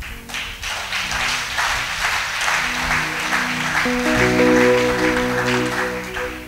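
Congregation applauding, with music of held chords building up under it and loudest from about four seconds in.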